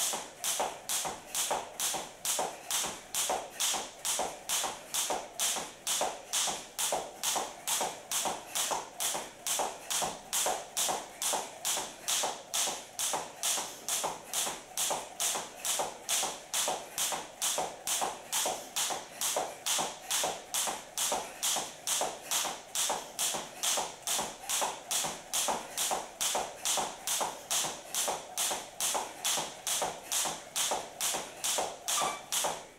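Jump rope skipping on a wooden floor: the rope slapping the floor and the feet landing, in a steady rhythm of about two strokes a second, during high-knee skipping.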